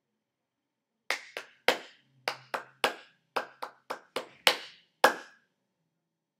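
Hand claps in a rhythm pattern for a clap-back exercise: about twelve sharp claps over roughly four seconds, starting about a second in, in short uneven groups with a few louder accents, ending on a single clap.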